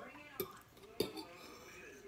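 Metal cutlery clicking against a dinner plate as food is cut with a knife and fork: two light clicks, about half a second and one second in.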